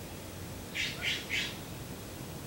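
A bird giving three short, harsh calls in quick succession, about a second in.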